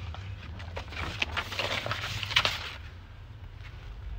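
Rustling, clicks and light knocks of someone moving about inside a van cab and handling the phone, over a steady low rumble; the sharpest knock comes a little past halfway.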